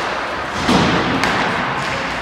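Hockey puck thudding against the rink boards about two-thirds of a second in, with sharp stick-on-puck clacks just before and about a second after it.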